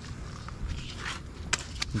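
A few light scuffs and taps on a concrete pier deck over a steady low rumble.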